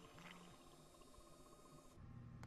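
Near silence, with a faint hiss and a faint steady tone that cut off near the end.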